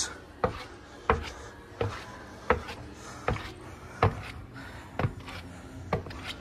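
Footsteps on the metal steps of a switched-off Schindler escalator: a steady walking pace of about eight sharp footfalls, roughly one every 0.7 seconds.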